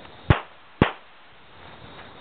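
Two sharp pistol shots about half a second apart.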